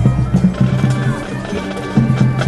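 High school marching band playing loudly, with sustained low notes and sharp drum hits.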